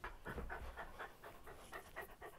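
A dog panting quickly and faintly, several short breaths a second.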